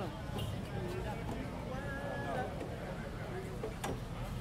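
Faint voices talking in the background over a low, steady rumble of room or outdoor noise, with one sharp knock just before the end.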